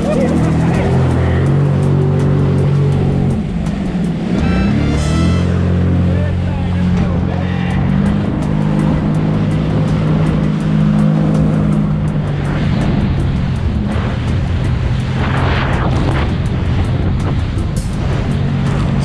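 Jet ski engine running at speed, a steady low drone, with water rushing and spraying against the hull. The engine note dips and picks back up about three to four seconds in.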